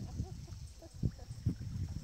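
A few soft, low knocks and bumps of kayak paddling on calm creek water, over a steady, faint, high-pitched drone of insects.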